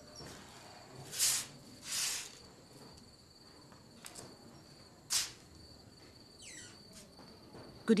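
Crickets chirping steadily in the background, with three short hissing noises: at about one second, at two seconds and just after five seconds.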